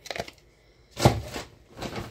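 Short handling noises of plastic blister packaging being moved and put down: light rustling and clicks, with a louder thump about a second in.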